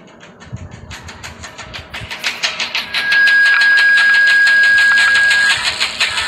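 Rapid mechanical clicking that speeds up and grows louder over the first three seconds. A steady high whistle-like tone then joins it and cuts off about half a second before the end.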